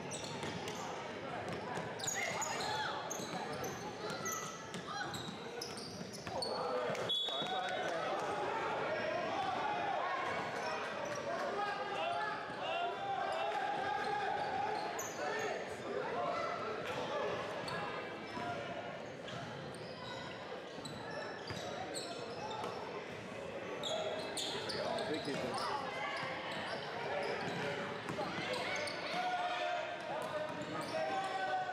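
Basketball being dribbled on a hardwood gym floor, with players and spectators talking and calling out all through, echoing in a large gym. A single sharp knock stands out about seven seconds in.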